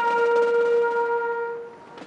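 A trumpet holds one long note, which fades out a little before the end.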